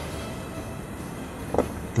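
Steady background music, with a brief vocal sound about one and a half seconds in.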